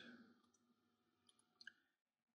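Near silence with a few faint, short clicks, the clearest one near the end.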